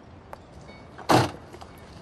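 A car door shut once, one short thud about a second in: the passenger door of a red Ford Mustang GT convertible.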